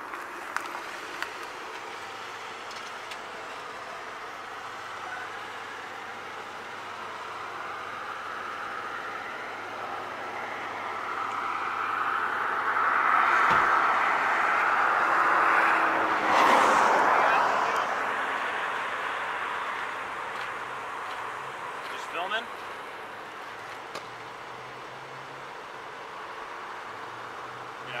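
A car driving past at close range: its noise swells over several seconds to a peak about halfway through, then fades away, over a faint steady low hum.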